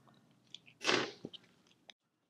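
A rounded steel pick and gloved fingers working a rubber seal off a go-kart brake master cylinder piston: a few faint clicks and one short, louder scrape about a second in.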